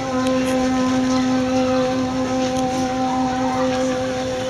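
A single low note with overtones begins and is held steadily for about four seconds, over a wash of background noise.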